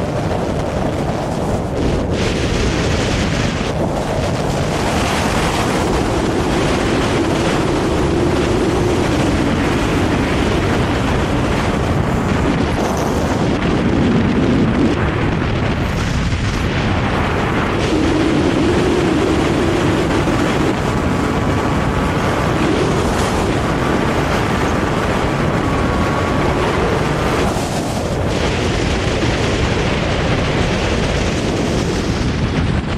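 Steady, loud wind rush and buffeting on a camera's microphone carried through the air in wingsuit flight.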